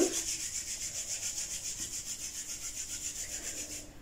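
Palms rubbed briskly together, an even, rapid swishing of skin on skin at several strokes a second, warming the hands before they are cupped over the eyes. It stops just before the end.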